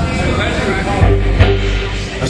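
Live band playing rock music through a stage PA, with heavy bass coming in about a second in. A single sharp click about halfway through.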